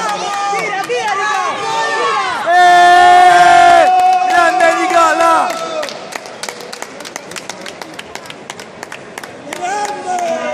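A spectator close to the microphone shouts excitedly, rising into long, loud held yells about a third of the way in. Then come scattered hand claps from the crowd as the match ends in a submission win.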